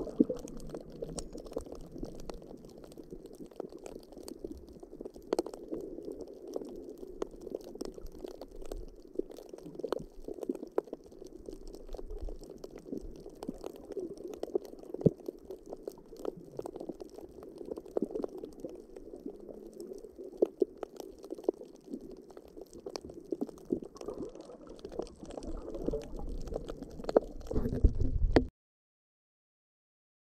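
Muffled water sound heard from under the surface in shallow water: a steady low rush of moving water, dotted throughout with short sharp clicks and crackles.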